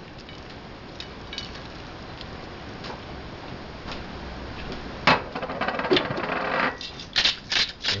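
Handling clatter: a sharp click a little after halfway, a second one soon after, with rustling between. Near the end a pepper mill starts grinding in quick ratcheting clicks.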